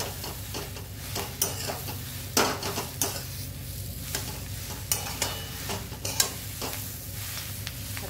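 Steel spatula scraping and knocking against a non-stick kadai at irregular intervals as dry, crumbly besan-coated capsicum is stirred and turned, over a light sizzle of the oil.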